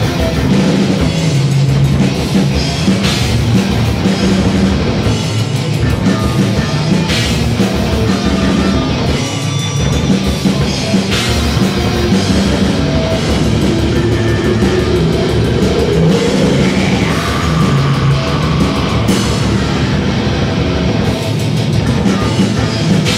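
A heavy metal band playing live: distorted electric guitars over a drum kit, loud and steady, with a rising glide in pitch about two-thirds of the way through.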